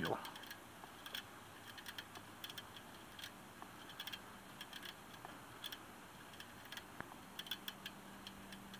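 Bicycle front wheel spinning freely on freshly cleaned, lubricated hub bearings, giving faint, irregular light ticks several times a second.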